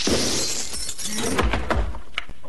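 A crash as something smashes apart in a cloud of dust and debris. A scatter of fragments follows, clattering and cracking, with a couple of heavy thuds late on.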